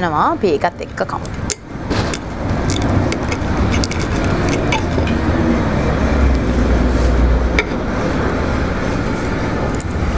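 A steady rumbling background noise that swells for a while past the middle, with a few sharp clicks of a knife and fork on a plate.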